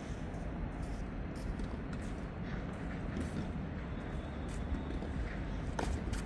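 Steady outdoor background hum around a clay tennis court, with a few faint knocks and a tennis racket striking the ball near the end.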